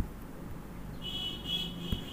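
A high, thin whistle-like tone starts about halfway through and holds steady, over a low background hum, with two short soft knocks, one at the start and one near the end.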